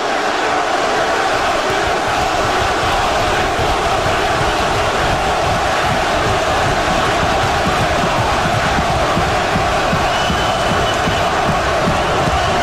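Large arena crowd yelling loudly and steadily, a sustained mass of voices with no break.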